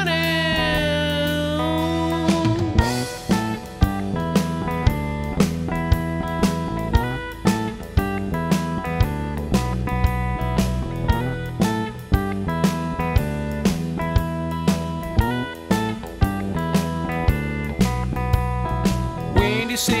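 Rock band recording in an instrumental passage: electric guitar, bass and drum kit. A held, wavering note rings over the first two seconds, then the drums set in with a steady beat of about two hits a second, and singing comes back right at the end.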